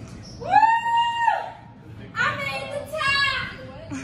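A person's high-pitched squeal, rising and then held for about a second, followed by a second stretch of excited, high-pitched vocalising.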